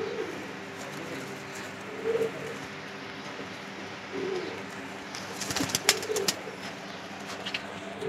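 Domestic pigeons cooing, about four short coos a couple of seconds apart. A few sharp clicks and rustles come in the second half.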